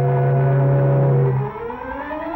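Factory steam whistle blowing one long, loud, steady chord that stops about one and a half seconds in.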